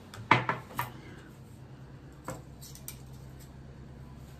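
Tableware clinking on a glass-topped table: a porcelain cup is set down with a quick cluster of sharp clinks in the first second. A couple of seconds in comes a single clink of cutlery.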